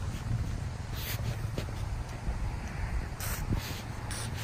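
Two short squirts from an aerosol can of dry Teflon-style lube, sprayed through its straw into a pickup's rear sliding-window track to free up the sticking window: a faint one about a second in and a stronger one a little after three seconds. A low rumble of wind on the microphone runs underneath.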